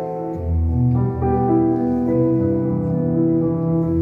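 Nord Stage stage keyboard playing slow, sustained chords, with low bass notes coming in about half a second in.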